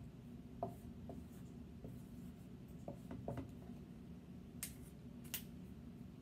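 Dry-erase marker writing on a small whiteboard: faint, scattered strokes and taps, with two sharper strokes near the end.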